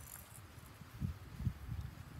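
Wind rumbling on the microphone, irregular and low, with stronger gusts about a second in and again near one and a half seconds.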